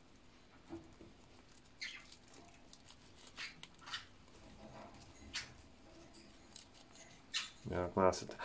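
A young hamster scratching and digging in the sand of its sand bath: a few faint, short scratches spaced a second or so apart.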